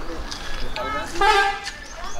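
A short, steady horn toot about a second in, over people talking.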